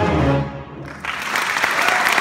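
A band's final low chord rings out and fades over the first second; about a second in, the audience breaks into applause, which carries on steadily.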